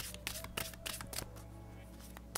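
A deck of tarot cards being shuffled and handled, a run of quick, irregular papery flicks, with faint music underneath.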